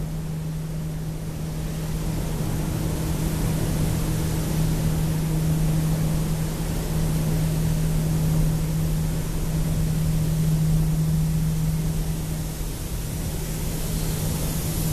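Industrial plant machinery running steadily: a constant low hum with an even rushing noise over it.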